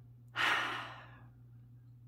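A woman's single audible breath, like a sigh, starting about a third of a second in and fading away within about half a second.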